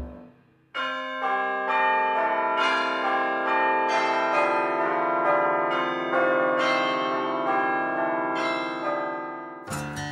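Soundtrack music: after a brief gap, a run of ringing bell-like chime notes, each struck sharply and left to ring on, with acoustic guitar strumming coming in near the end.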